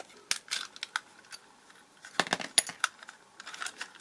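Screwdriver prying open the snap-fit plastic case of a small DIN rail electricity meter: scattered sharp clicks and scrapes of plastic against plastic and metal, in two short clusters, one in the first second and one a little past the middle.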